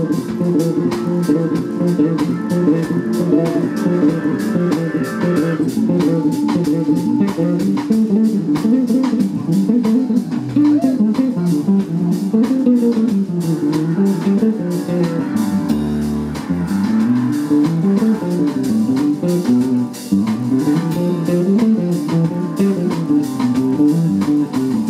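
A live blues band playing an instrumental passage with no singing: an electric bass guitar plays a busy line that climbs and falls, with drums keeping time.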